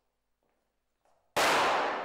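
Faint footsteps on a hard floor, then about a second and a half in a single loud gunshot that rings out and dies away over the following second.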